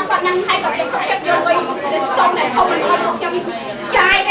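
Speech only: a woman talking into a handheld microphone, with crowd chatter in a large room.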